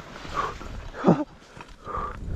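A short vocal yelp from a skier, loudest about a second in, among the swish and thump of skis in deep powder snow as he drops off a snow pillow.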